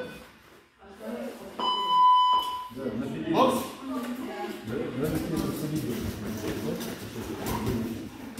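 A boxing round timer buzzer sounds once for about a second, a steady electronic tone, signalling the start of a sparring round; voices and gym chatter follow.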